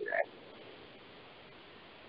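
A man's voice trails off in the last fragment of a word, followed by a pause holding only the faint, steady hiss of the recording.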